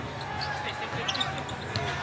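Basketball dribbled on an arena's hardwood court, with a few bounces heard, under faint voices in the arena.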